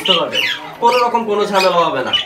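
Small pet parrots calling, with a falling call in the first half second, over a man's voice.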